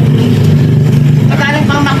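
A motor engine running steadily with a low hum. A man's voice comes in near the end.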